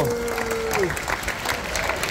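Audience applauding, with a held vocal note fading out about a second in.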